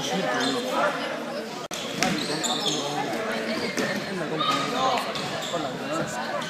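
A futsal ball being kicked and bouncing on a sports hall's wooden floor, several separate thuds, with players' and spectators' voices echoing in the large hall.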